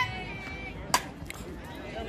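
A softball bat strikes a pitched ball once, a single sharp crack about a second in, with faint spectator voices behind it.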